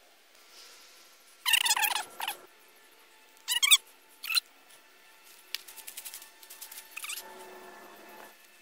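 Small 3D-printed rope-climbing robot's drive squeaking in short loud bursts, then a fast run of clicks as it works its way along the rope.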